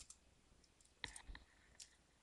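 Near silence broken by a few faint computer mouse clicks, a cluster about a second in and one more near the end.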